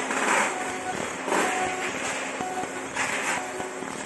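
Fiber laser marking stainless steel on a rotary fixture: a noisy crackle that swells in three short spells as the beam fires, over a steady low machine hum.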